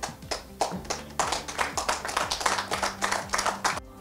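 Audience applauding: many hands clapping together, building up within the first second and cutting off suddenly just before the end.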